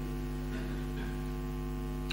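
Steady electrical hum in the recording: several fixed low tones held without change, with a faint hiss.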